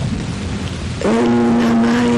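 Rain with a low rumble of thunder. About a second in, a steady held tone at one pitch comes in over it.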